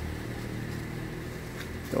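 Low, steady hum of an idling vehicle engine.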